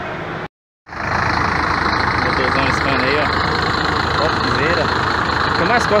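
Rear-mounted diesel engine of an intercity coach idling steadily and loudly close to its engine grille, after the sound cuts out briefly near the start.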